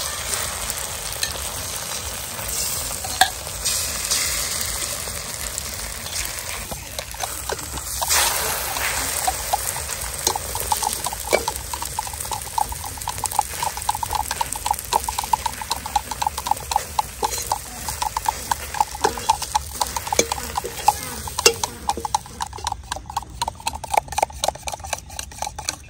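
Beaten egg frying in oil in an aluminium kadai, with a steady sizzle while a metal spatula stirs and turns it. From about ten seconds in, quick repeated scrapes of the spatula against the pan.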